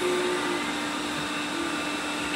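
Robot vacuum cleaners running: a steady whir of suction fan and brush motors with a steady low hum.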